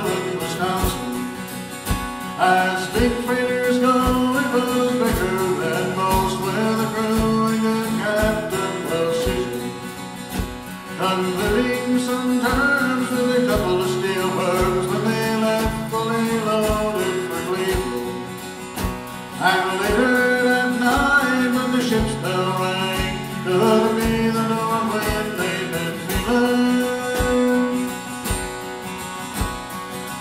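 Live folk band playing: acoustic guitar with a steady drum beat under a moving melody line.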